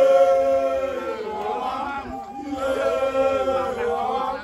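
A group of men's voices chanting in unison, in two long held phrases with a softer stretch in between.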